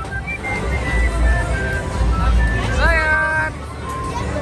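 Music: a simple melody of short high notes, with a voice rising and holding about three seconds in, over a steady low rumble.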